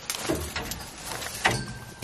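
Dry bush rustling and crackling as a lion pushes through the twigs close by, with a few sharp snaps, the clearest about one and a half seconds in.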